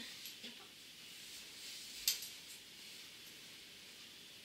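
Clothes and a hanger being handled: faint rustling, with a few small clicks and one sharp click about halfway through.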